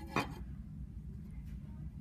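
A single brief rustle of yarn being drawn through the centre of a clay weaving loom with a needle, about a fifth of a second in, over a low steady hum.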